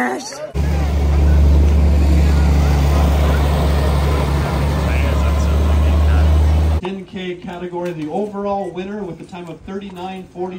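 Large farm tractor engine running steadily close by, a loud, even low drone for about six seconds that cuts off abruptly; a man then speaks over a microphone.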